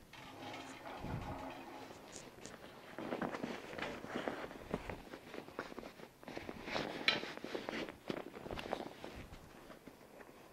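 Cotton bed sheet rustling and swishing irregularly as it is folded and tucked under a hospital bed mattress to make a mitered corner, with a few light clicks.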